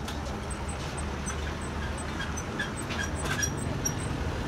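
Street background noise: a steady low rumble with faint short high-pitched chirps and a few light clicks.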